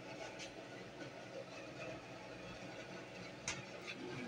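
Quiet, steady room noise, with a faint click about three and a half seconds in.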